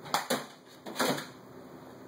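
Knocks and clatter of a toddler handling DVD cases and a box on a table, in two short bursts about a second apart.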